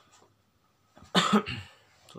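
A person coughs once, briefly, a little over a second in, after a near-silent pause.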